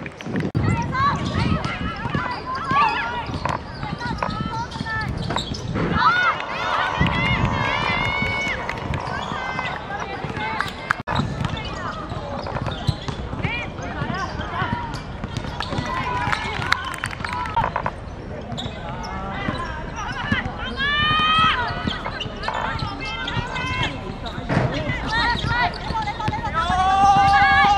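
Women footballers shouting and calling to each other during play, with the ball being kicked now and then.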